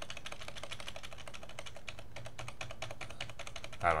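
A quick, even run of clicks from a computer keyboard, several a second, over a low steady hum.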